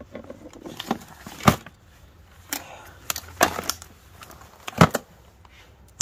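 Gloved hands rummaging through a plastic storage tote of mixed items and handling a knife in a leather sheath. Several short, sharp knocks and clatters of objects against each other and the tote, the loudest about one and a half seconds and five seconds in.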